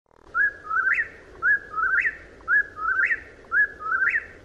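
Whip-poor-will singing its namesake song: a clear whistled three-note phrase, the last note sweeping sharply upward, repeated about once a second, four times.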